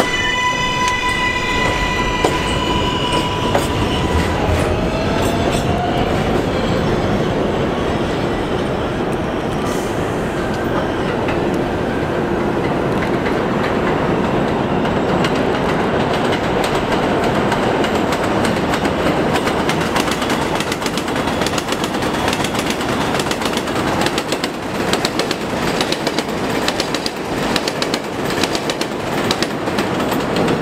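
A New York City Subway R188 7 train pulls out with an electric motor whine that rises in steps and then holds one pitch for a few seconds. Then comes a loud, steady rumble of trains running on the elevated line, with quick rapid clicks of wheels over rail joints near the end.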